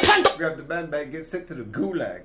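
A rap track cuts off just after the start as it is paused. A man then laughs quietly under his breath, with a few light clicks.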